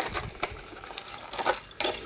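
Clear plastic blister packaging crackling as a small die-cast toy truck is pulled out of it, with a few sharp plastic clicks, the loudest cluster about one and a half seconds in.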